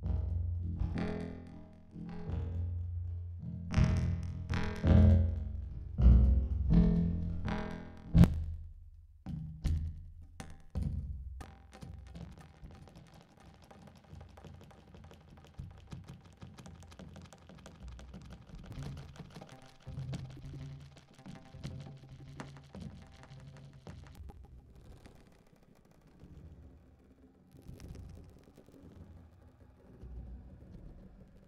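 A percussion track played through a heavy modular delay effect (Saike's Reflectosaurus): loud, bass-heavy hits about once a second with echoes for the first eight seconds, then a quieter, dense, rippling echo texture for the rest.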